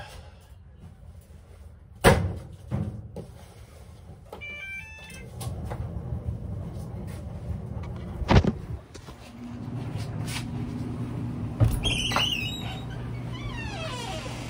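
Clothes dryer being restarted with wet sheets: two knocks of the door being shut, a short run of control-panel beeps, then the dryer starting up and running with a steady hum that grows stronger about halfway through. Another loud knock comes about eight seconds in.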